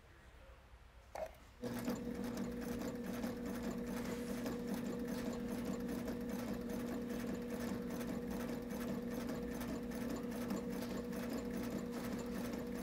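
Sailrite Ultrafeed sewing machine driven by its WorkerB Power Pack motor at the lowest speed setting with the pedal fully down, stitching through four layers of Sunbrella fabric at about 140 stitches per minute. A brief tap comes first, then about a second and a half in a steady motor hum starts, with an even, repeating stitch rhythm.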